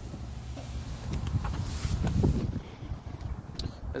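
Wind rumbling on the phone's microphone, with a few clicks and shuffling footsteps as a person climbs out of an SUV and walks along it.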